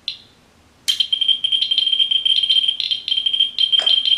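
Radiation detectors' audio: a single short electronic chirp at the start, then from about a second in a steady high-pitched electronic tone with irregular chirps over it, as the meters respond to a uranium-glass cup. A light knock near the end.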